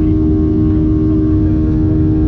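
Boeing 737-800 cabin noise beside the wing, dominated by its CFM56-7B turbofan engine: a loud, steady drone with a deep rumble and a constant hum-like tone on top.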